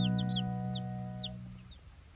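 Baby chicks peeping: a run of short, high cheeps, each falling in pitch, a few a second. Under them a held music chord fades away in the first part.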